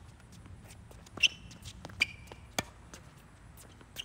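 Tennis rally on an outdoor hard court: a few sharp knocks of racket strikes and ball bounces, with short high squeaks and footsteps. The loudest knock comes about a second in, and another as the near player swings his forehand at the end.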